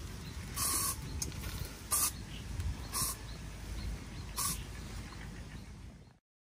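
Four short hisses from an aerosol spray can, each a fraction of a second long and spaced about a second apart, over a steady low rumble.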